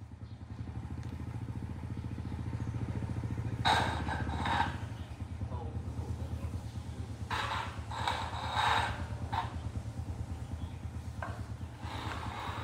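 A small engine running steadily with a rapid low pulse. Brief louder noisy bursts come about four seconds in and again around eight to nine seconds.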